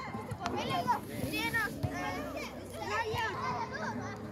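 Young children shouting and calling out during a football game, several high voices overlapping.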